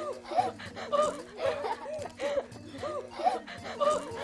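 Children laughing in a run of short, high-pitched bursts, a few a second.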